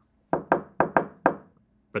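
A quick run of about six sharp knocks in just over a second.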